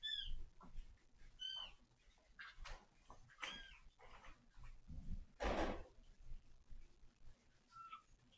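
A kitten mewing: short, high-pitched mews, about three of them, faint. About five and a half seconds in there is one brief rustling noise.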